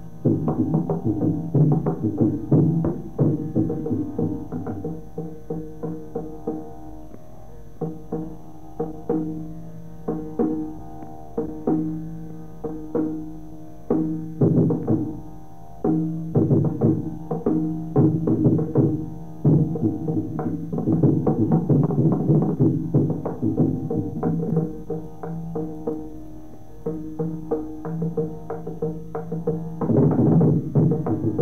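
Carnatic percussion solo (tani avartanam): dense, rapid mridangam strokes in shifting rhythmic patterns over a steady tanpura drone, with a few brief pauses between phrases.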